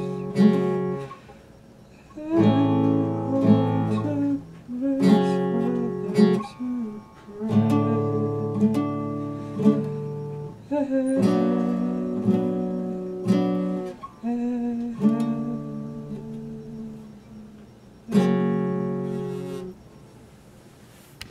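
Classical guitar chords strummed and plucked by hand, in short phrases with brief pauses between them.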